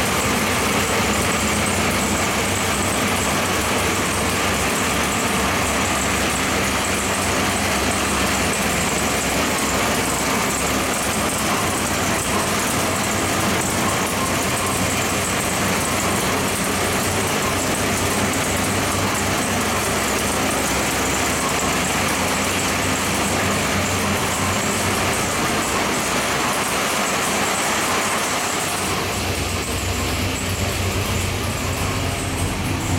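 A 632-cubic-inch big-block Chevrolet V8 marine engine idling steadily at about 1,000 rpm on an engine dynamometer.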